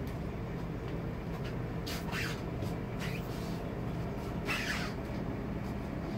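A steady low mechanical hum, with faint voices in the background twice.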